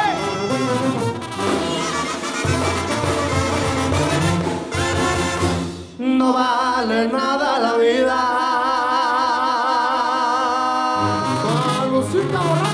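Mexican banda brass band playing live: trumpets, trombones, tuba and drums. About halfway through, the tuba and low end drop out for several seconds, leaving wavering held notes from the higher instruments. The full band comes back in near the end.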